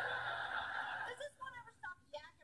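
A person's voice: a drawn-out breathy vocal sound lasting about a second and a half, then short mumbled vocal sounds near the end.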